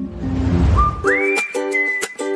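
Background music changing over, with a whoosh transition in the first second that has a low rumble under it. A new track then comes in: a whistled melody slides up and holds over plucked ukulele-like chords with a light clicking beat.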